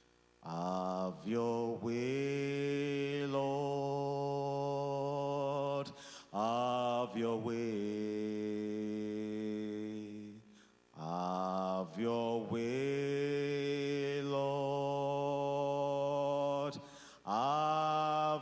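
A man's voice singing a slow prayer chorus in long held notes, in phrases of a few seconds with short breaks for breath between them.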